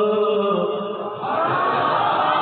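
A solo devotional chant without instruments. The voice holds one long note, slides into a new pitch about half a second in, and from a little past a second begins a new phrase with heavy echo.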